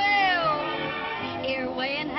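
A woman singing with orchestra accompaniment in an early 1930s musical number, on a long note that slides down in pitch over the first second before settling.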